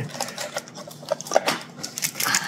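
Light rustling and scattered small clicks as items are handled inside a cardboard card box and a plastic-wrapped bundle is lifted out.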